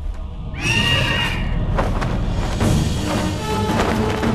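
A sudden shrill screech from a giant demon bird about half a second in, sagging slightly in pitch over about a second, over loud background film music.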